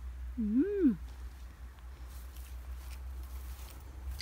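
A woman's brief wordless 'mmm', rising then falling in pitch, under a second in, followed by a steady low rumble on the microphone.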